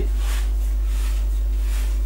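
A steady low electrical hum, like mains hum on the recording, with a few faint soft noises over it.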